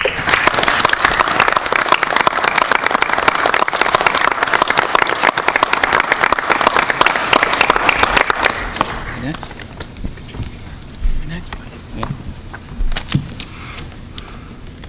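Audience applauding: dense clapping that starts the moment the tribute ends and dies away after about nine seconds, leaving a few scattered knocks.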